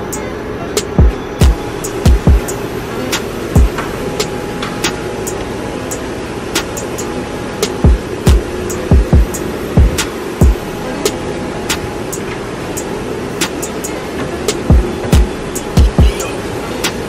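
Steady machine hum of a laundromat, with repeated dull thumps and small sharp clicks as clothes are pushed by hand into the drum of a front-loading washer.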